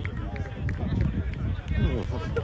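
Men's voices talking and calling out at a distance, with wind rumbling on the microphone.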